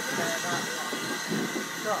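People's voices talking over the steady rolling noise of railway coaches passing slowly on the track.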